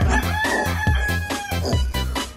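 A rooster crowing, one long held call of about a second and a half, over background music with a steady beat.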